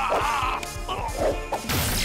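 Cartoon fight sound effects with dramatic background music: a held, wavering tone in the first half-second, then a loud crash near the end.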